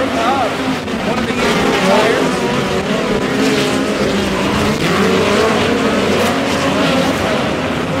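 Engines of several dirt-track midget race cars running flat out in a close pack, their overlapping pitches rising and falling as they go around the oval.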